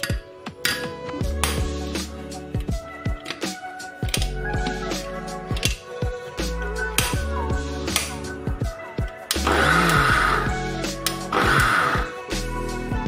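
Background music with a steady beat. Near the end a mixer grinder runs in two short loud pulses, grinding grated fresh tapioca.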